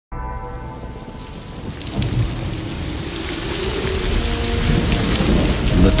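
Heavy rain pouring down with low rolling thunder, the rumble swelling about two seconds in.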